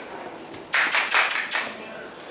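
A quick run of tapping, scuffing steps on a straw-bedded dirt barn floor, starting about a second in and lasting under a second.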